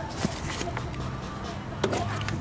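A couple of light clicks from hands handling parts at a brake caliper, one about a quarter second in and one near the end, over a faint low hum.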